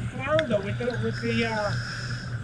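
A man's voice, brief and indistinct, over a steady low hum.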